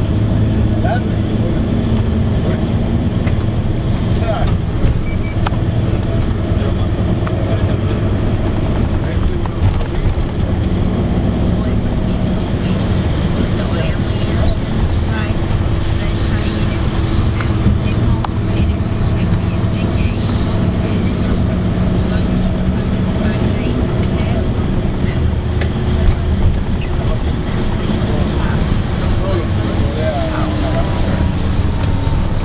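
Steady engine drone and road noise heard from inside a moving vehicle.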